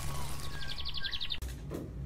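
Bird chirps and a rapid high trill over a steady low hum, from the soundtrack of an animated logo sequence; it cuts off suddenly about a second and a half in, leaving quiet room tone.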